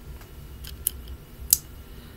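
A few light clicks of a small plastic toy wrestling figure being handled and turned in the fingers, the sharpest about one and a half seconds in, over a low steady hum.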